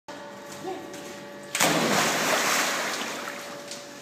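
A body jumping into a swimming pool: one loud splash about one and a half seconds in, then the disturbed water slowly dying away.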